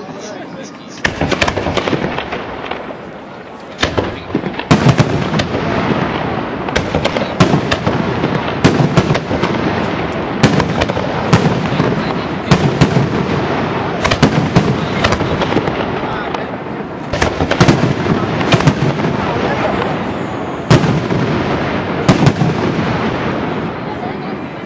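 Aerial firework shells bursting in a rapid barrage. Sharp bangs come several a second over a dense background of noise, starting about a second in after a quieter opening.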